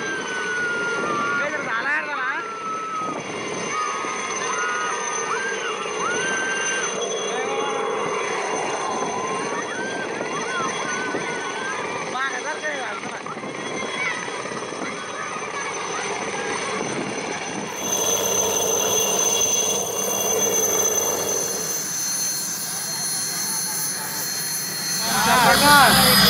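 Army helicopter running close by, its rotor and turbine giving a steady noise with a thin high whine, as it flies low over a field and sets down. Bystanders' excited voices call out over it.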